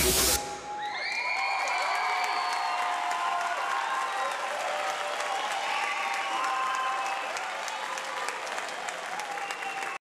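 An electronic dance track ends on a rising noise sweep and cuts off suddenly. An audience then claps and cheers, with whoops and shouts, the applause easing slightly near the end.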